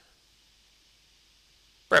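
Near silence: a faint steady hiss of room tone, with a man's voice starting again just before the end.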